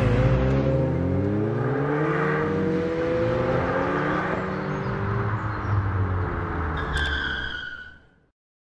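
Car engine sound effect for an intro card: an engine running and revving, its pitch sliding up and then down, with a sharp click and a high squeal about seven seconds in before it fades out at the end.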